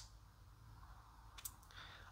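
Near silence: room tone, with a single faint click about one and a half seconds in.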